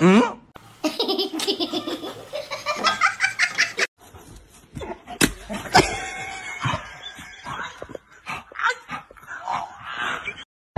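People laughing in repeated bursts, with a short rising sound at the very start.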